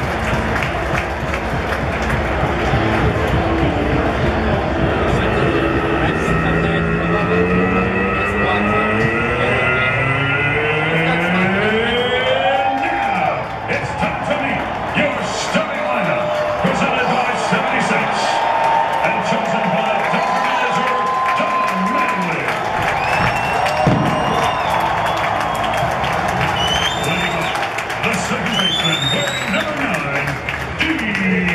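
Baseball stadium crowd cheering and chattering under music over the public-address system. A stack of rising tones swells upward partway through, and short rising high notes sound near the end.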